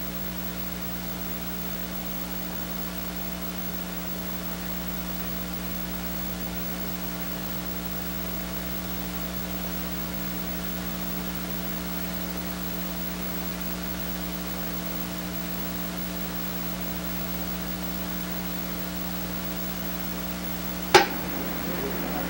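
Steady electrical mains hum with faint hiss, made of several unchanging tones. About a second before the end comes a single sharp click, the loudest moment.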